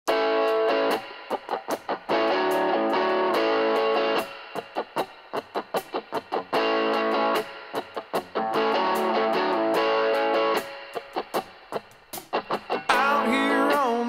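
Guitar intro of a rock song: full chords ring out for a second or two, then alternate with quick, choppy muted strums, over and over. Near the end a wavering, bending melody line comes in.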